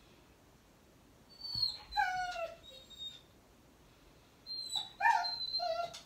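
Dog whining: two bouts of high whimpers that fall in pitch, about a second and a half in and again near the end.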